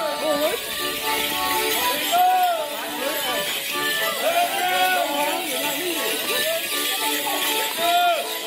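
Music playing for a Morris dance, with a steady jingle of bells from the dancers' leg bells as they step, under a mix of voices.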